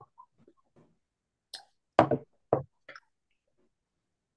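A mug being set down on a desk and handled: a sharp knock about two seconds in, a second knock half a second later, and a few lighter clicks around them.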